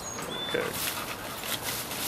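A pit bull and a Siberian husky play-wrestling in a bed of hosta plants: rustling of leaves and stems, with the dogs' own noises, in a run of many small scuffling sounds.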